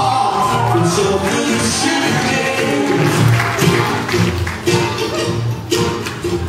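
Live acoustic band music: a man singing over strummed acoustic guitars.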